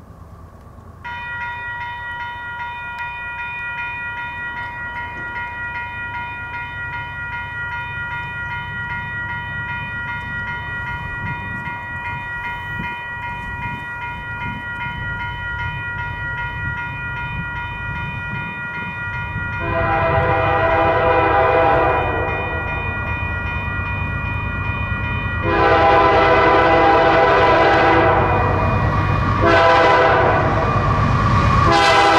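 Level-crossing warning bells start ringing about a second in and keep ringing steadily, while the low rumble of an approaching Canadian Pacific diesel freight builds. The locomotive horn sounds a long blast about two-thirds of the way through, then a longer one, and a third begins right at the end.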